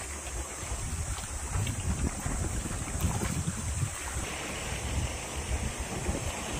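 Wind buffeting the microphone in an uneven low rumble, over the hiss of seawater washing against shoreline rocks.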